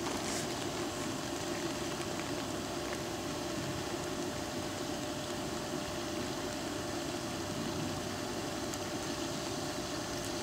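A steady low mechanical hum, like an engine idling, with a faint constant whine above it; it holds even throughout without changing.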